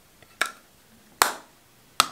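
Sharp plastic clicks and taps from a makeup compact being handled and set down on a desk, three short clicks about a second apart.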